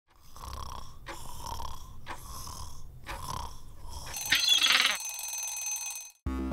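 Stainless-steel egg-shaped wind-up kitchen timer ticking about once a second over a low rumble. About four seconds in, its alarm bell rings loudly, and the ring then holds steady until it cuts off.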